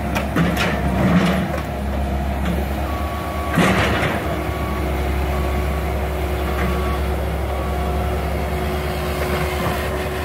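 Diesel hydraulic excavators running steadily while working demolition rubble, with crashes and scrapes of broken concrete and brick, the loudest about three and a half seconds in. Through the middle a backup alarm beeps several times, about once a second.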